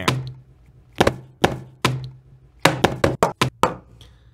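A series of short, sharp knocks and taps of small boxed gadgets and a plastic device being set down and handled on a table: a few spaced knocks in the first two seconds, then a quick run of about eight.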